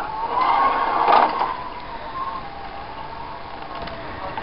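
Emergency vehicle siren wailing, a single tone slowly rising and falling, with a louder burst of noise over it in the first second and a half.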